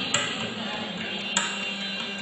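Two single mridangam strokes about a second apart, sharp and ringing briefly, over a steady low drone.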